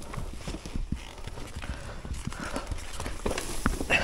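Irregular footsteps of riding boots scuffing and crunching on dry dirt and loose stones, with knocks and rattles from a dirt bike being walked down a steep trail. A sharper click comes just before the end.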